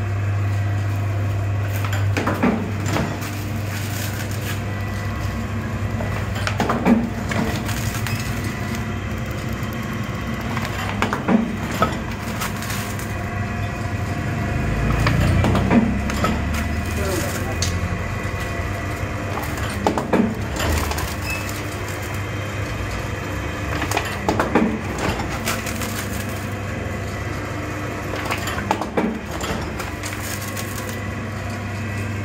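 Paper plate making machine running: a steady motor hum with a pressing stroke about every four to five seconds as it forms plates from the silver-laminated paper roll.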